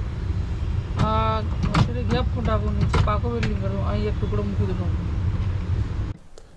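Men's voices talking in short phrases over a steady low rumble.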